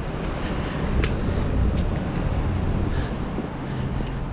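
Wind buffeting the camera's microphone: a steady rumbling hiss, with a few faint ticks.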